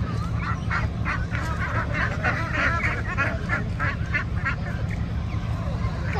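A flock of penned domestic ducks quacking in a rapid run of calls, about three or four a second, that dies away near the end, over a steady low hum.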